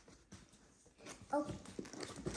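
Cardboard shipping box being opened by hand: faint scraping and rustling of the flaps, with a louder low thump about one and a half seconds in.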